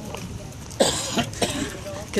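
A person coughs about a second in: one sudden harsh burst, with a smaller one just after.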